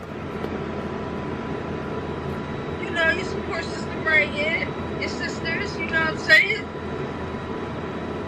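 Short bursts of voices coming through a phone's speaker on a video call, over a steady hum and hiss.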